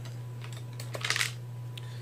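Small hard objects clicking and rattling against each other and the plastic case as items from a mini survival kit are handled, with a short cluster of clicks about a second in, over a steady low hum.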